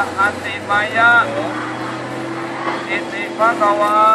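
A single voice chanting a Thai Buddhist chant in Pali, drawing syllables out in a wavering melodic line, with a steady low tone held underneath in the second half.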